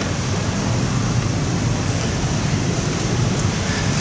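Steady, even hiss of background noise with no other sound: the room tone of a large room.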